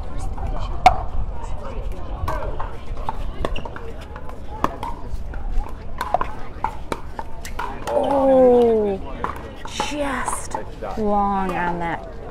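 Pickleball paddles striking a plastic ball in a rally: sharp pops at irregular spacing. Near the end come loud shouted calls that fall in pitch, a few times.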